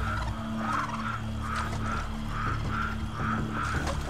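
Frogs croaking at night, short calls repeating about two or three times a second, over a low sustained drone from the film's score.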